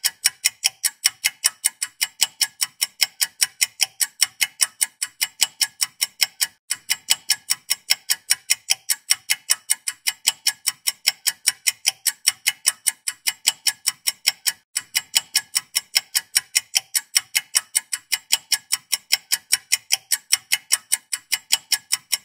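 A clock-ticking sound effect: rapid, evenly spaced ticks, several a second, with brief breaks where the loop restarts. It marks a timed pause for the viewer to work out an answer.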